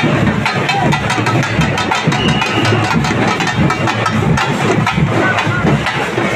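Fast, loud procession drumming over the steady rumble of a vehicle engine idling, with voices of the crowd.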